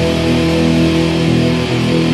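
Melodic punk rock recording in its instrumental closing bars, led by strummed electric guitars.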